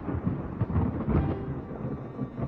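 Thunder rolling: an uneven low rumble with several swells.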